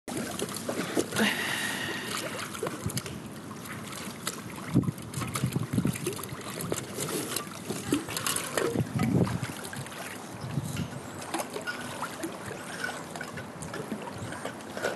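Swimming-pool water sloshing and splashing as people wade and move through it, with scattered small knocks.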